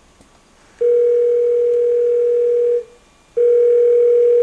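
Telephone ringback tone on the line: two long steady beeps of about two seconds each, separated by a short gap, as a call rings through to a hotline.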